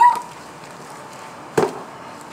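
The tail of a high, rising vocal exclamation at the very start, then a single sharp thump about one and a half seconds in.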